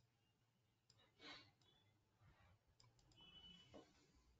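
Near silence with a few faint computer mouse clicks, one about a second in and a short cluster near the end.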